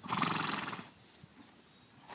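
A pony snorting: a short, fluttering blow through its nostrils, just under a second long.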